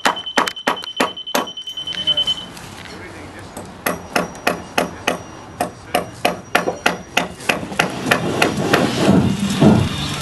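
A hammer striking wooden footing-form boards and stakes, nailing the forms together. A quick run of about four blows a second for the first two seconds, then a pause, then steady blows about three a second until near the end. A steady high electronic tone sounds over the first couple of seconds.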